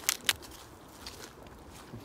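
Three quick sharp clicks near the start, then a faint rustle of footsteps on leaf litter.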